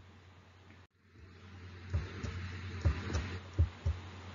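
Faint room hiss, nearly silent at first, with four or five soft, low thumps in the second half.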